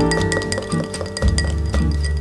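Background music with held notes and a bass line, over a thin metal spoon clinking against a glass tumbler as it stirs olive oil and liquid.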